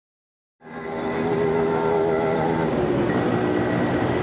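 Street traffic: vehicle engines running steadily, fading in under a second in.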